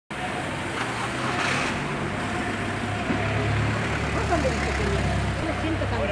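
Street traffic noise with a steady low engine hum, with people's voices talking in the background over the second half.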